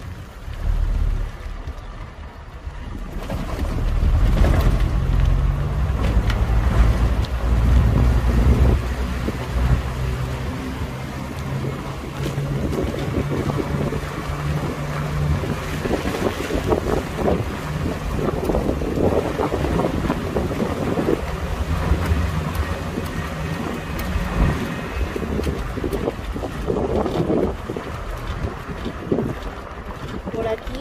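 A car's engine and tyre noise heard from inside the moving car, with wind buffeting the microphone. The engine grows louder about three to four seconds in, and its low hum shifts in pitch several times as it goes.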